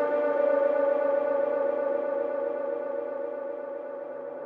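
A sustained synthesizer drone in a dark drum and bass mix, held at a steady pitch with no drums under it. It slowly fades and grows duller as its high end falls away.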